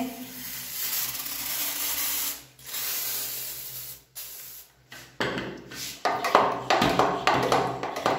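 Handheld pump sprayer spraying liquid in two long hissing bursts, the second shorter. Near the end comes a run of quick clicks and knocks.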